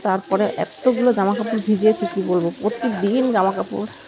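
Fish pieces sizzling as they fry in oil in a steel wok, with a ladle stirring a pot on the next burner. A woman's voice talks over it almost throughout and is the loudest sound.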